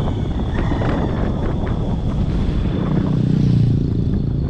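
A car driving along a road, heard from a camera mounted on its roof: a steady low rumble of wind and road noise that swells louder near the end.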